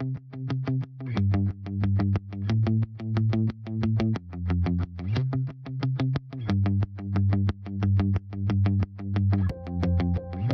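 Background music with a quick, steady beat over a low bass line and effected, guitar-like tones; a held higher note joins near the end.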